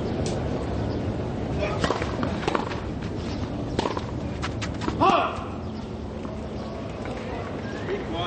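Tennis ball bouncing and being struck on a clay court, a string of sharp knocks in the first half over a low crowd murmur. About five seconds in, a single loud shout of a voice rises and falls in pitch.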